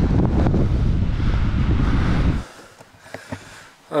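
Wind buffeting a camera's microphone while riding a bicycle, a dense low rumble that cuts off suddenly about two and a half seconds in. What follows is a much quieter room background with a few faint clicks.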